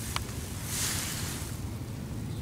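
Faint rustling handling noise, with a short click near the start and a soft rustle about a second in, over a steady low rumble.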